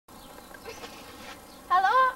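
Faint steady background hiss, then, near the end, a girl's voice calling out loudly with a wavering pitch.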